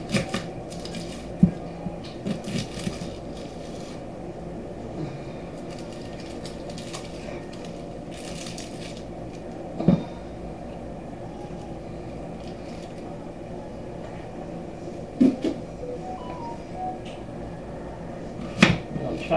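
Knife cutting through an onion onto a wooden cutting board, with a few sharp knocks. Papery onion skin rustles as it is peeled away. A steady low hum runs underneath.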